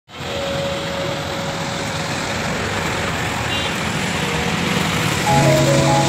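Steady hiss of road traffic on a wet highway. Background music comes in about five seconds in.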